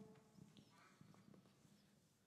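Near silence: room tone with a few faint scattered clicks and taps, after the last note of the hymn dies away at the very start.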